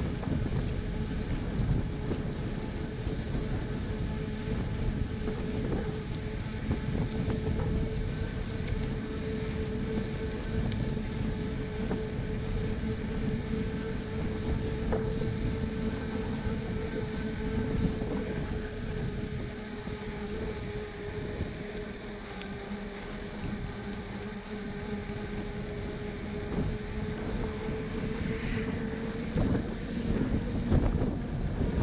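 Wind rushing over the microphone of a camera on a moving bicycle, with the rumble of tyres on the paved trail and a steady hum throughout.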